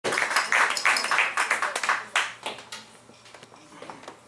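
Small audience clapping, dense at first, then thinning and dying away about two and a half seconds in, leaving only a few scattered claps.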